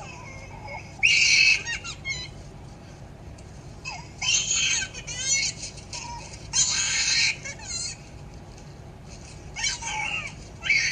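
A young girl screaming in pain, played from a film through a laptop's speakers. Three long high screams come about a second in, near four seconds and near seven seconds, with shorter wavering cries between them.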